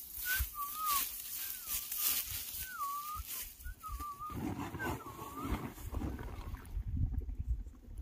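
A series of short, wavering whistled calls, about one a second, that stop about five and a half seconds in, over a low rumble of wind on the microphone.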